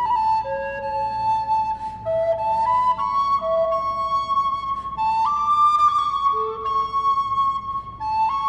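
A wooden recorder playing a slow melody of held notes that move by small steps, with the notes lingering in a reverberant room.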